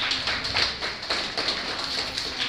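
Scattered audience clapping in a hall: irregular sharp claps, several a second, over a low crowd hubbub.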